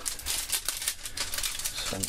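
Plastic packet crinkling and rustling as it is handled and opened by hand, a close run of quick irregular crackles.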